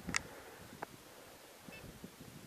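Footsteps crunching in snow that pause for about a second. Just after the start there is a short sharp high sound, then a thin click, and a faint short high-pitched tone near the end.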